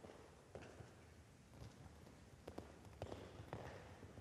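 Faint hoofbeats of a horse cantering on the sand footing of an indoor arena, a dull thud about every half second.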